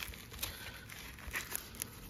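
Fabric headband cover rustling and crinkling faintly as hands fold it over an earmuff headband and press its hook-and-loop strip closed, with a few soft crackles.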